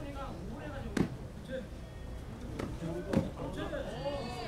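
Two sharp smacks of contact between taekkyeon fighters, about a second in and again about two seconds later, over a background of crowd voices.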